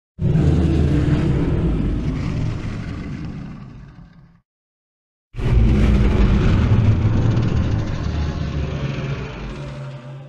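Two loud, deep, noisy bursts of sound, each starting abruptly and fading away over about four seconds, with dead silence between them and a third burst starting near the end.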